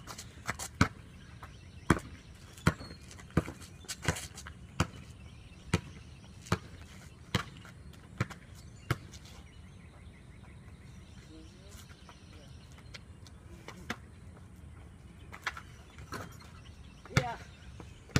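Basketball dribbled on a concrete court, bouncing a little more than once a second for about the first nine seconds, then a pause before a few more bounces near the end.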